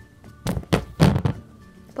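Three dull thumps in quick succession, about half a second to a second and a half in, from hands handling objects close to the microphone.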